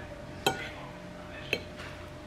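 A metal fork clinks twice against a ceramic plate, about a second apart, as it cuts through a crepe.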